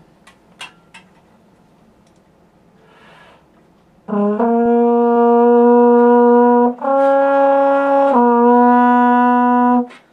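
A couple of clinks as a glass flask is fitted into a French horn's bell, a breath, then the horn plays one long, loud note for about six seconds with the flask in the bell. The pitch steps up briefly about two-thirds of the way through and drops back. Intonation is a big issue with this glass-flask mute.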